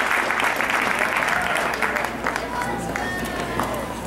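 Crowd applauding, the clapping thinning out and dying down, with voices among the crowd.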